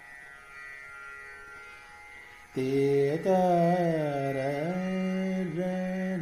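Male Indian classical vocal over a steady drone. For about the first two and a half seconds only the drone sounds. Then the voice comes back in strongly with sliding, held notes.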